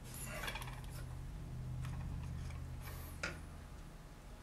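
Fingers and a modelling tool rubbing and scraping on clay, in a few short strokes, the clearest near the start and just after three seconds. A low steady hum lies underneath.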